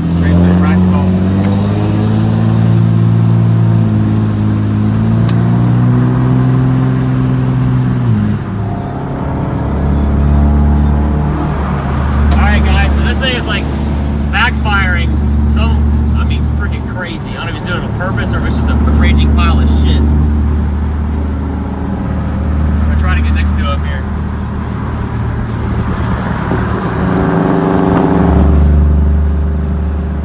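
A 2005 Dodge Ram 2500's 5.9-litre Cummins inline-six diesel heard from inside the cab. It accelerates for about eight seconds, its pitch and a high turbo whistle rising together, then drops off as the throttle comes back. After that it runs on in a steady low drone while driving.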